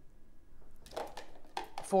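Quiet room tone for almost a second, then a voice speaking, loudest at the very end with the word "14".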